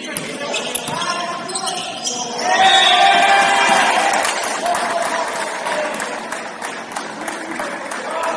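Basketball being dribbled on a hardwood gym floor with short knocks and sneaker noise, then about two and a half seconds in loud voices shouting that carry on for a couple of seconds and slowly die down.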